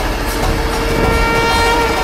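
Dramatic background score: a sustained horn-like drone over a heavy low rumble, with higher held tones joining about a second in.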